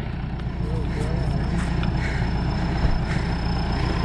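Sonalika DI-750 III tractor's diesel engine running steadily as it pulls a disc harrow, with faint voices about a second in.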